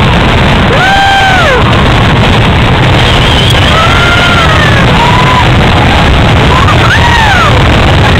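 A loud, continuous rumble from a fireworks display, so strong that the microphone overloads. Voices whoop over it several times, each call rising and then falling in pitch.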